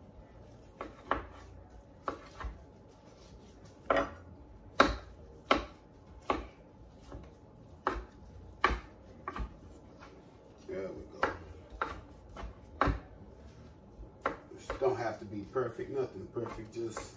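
Kitchen knife cutting boiled chicken breast into bite-size chunks on a wooden cutting board: irregular knocks of the blade hitting the board, roughly one every half second to a second.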